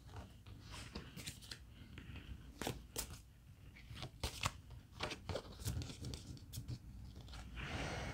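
Tarot cards being handled: picked up from a spread, stacked and laid down one at a time, giving a series of faint papery taps and rustles.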